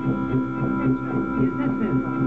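Live instrumental music: a held organ-like electric keyboard chord droning steadily, over low bass notes pulsing about four times a second.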